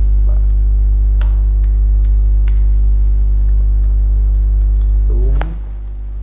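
Loud, steady electrical mains hum, with a few sharp computer-keyboard clicks as text is typed. A brief voice sound comes near the end, and the hum drops in level just after it.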